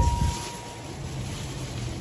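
Low steady rumble with a faint hiss inside a car's cabin; a faint high steady tone fades out about a second in.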